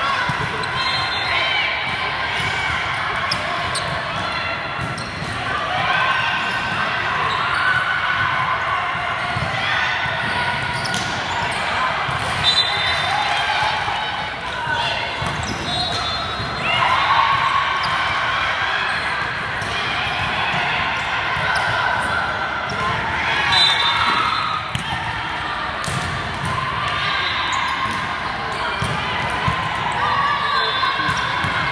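Volleyball gym noise: many voices of players and spectators calling and cheering over one another, with the thumps of volleyballs being hit and bouncing on the court.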